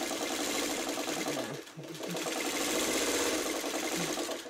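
Domestic sewing machine stitching patchwork pieces together at a steady, fast run, stopping briefly about halfway through and then sewing on.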